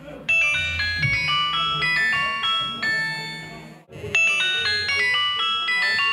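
A Nokia mobile phone ringing for an incoming call: a ringtone melody of quick, bright notes starts a moment in, breaks off briefly a little under four seconds in, and starts the phrase again.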